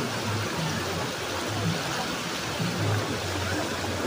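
Steady wash of rain and floodwater, with feet splashing and wading through the flooded street and irregular low thumps underneath.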